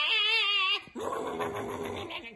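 A person's voice wailing with a wobbling, warbling pitch for under a second, then a rougher growling cry, a comic vocal imitation of a scuffle.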